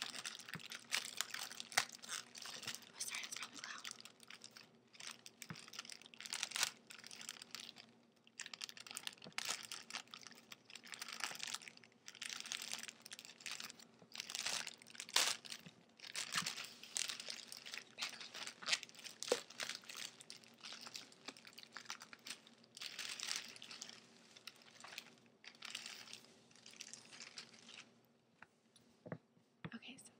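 Thin plastic wrapper being torn and peeled off a glossy magazine by hand, crinkling and tearing in irregular spurts with short pauses.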